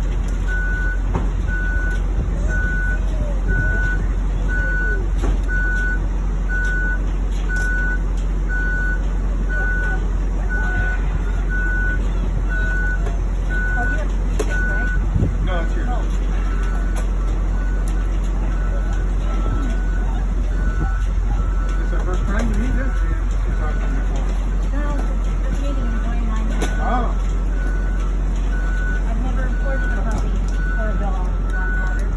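Vehicle backup alarm beeping steadily, a short high beep a little faster than once a second, over a steady low rumble. From about halfway through a second, slightly lower beeper joins, alternating with the first.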